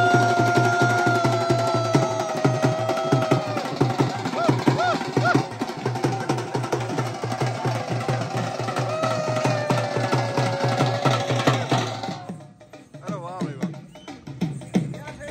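Dhol drums beaten in a fast, even rhythm, with a held, slightly wavering high melodic tone over it at times. The drumming stops abruptly about twelve seconds in.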